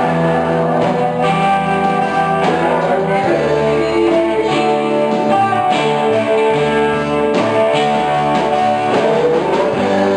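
Guitar-led rock band music, an instrumental passage with guitars to the fore and no singing.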